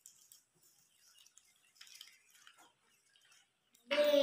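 Faint rustling and small ticks of folded paper slips being unfolded by hand, with a brief soft rustle about two seconds in.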